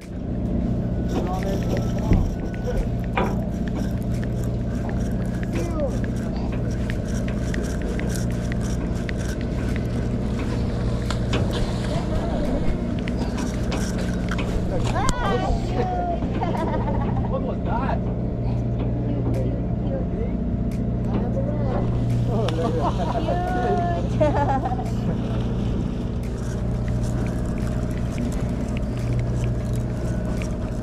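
Fishing boat's engine running with a steady low hum, with voices heard faintly over it at times.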